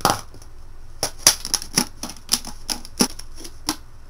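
Thin clear plastic drink bottle crackling and clicking sharply as hands flex and handle it, about a dozen irregular crackles over a few seconds.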